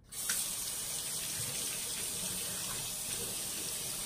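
A bathroom sink tap turned on and left running, the water falling steadily into the basin; it starts abruptly at the beginning.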